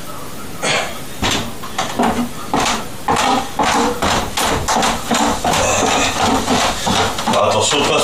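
Footsteps coming down wooden stairs, heavy knocking steps about twice a second, with an indistinct voice talking over them.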